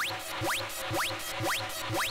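Eurorack modular synthesizer patch playing a repeating electronic sound: a quick rising chirp about twice a second, each with a low pulse under it.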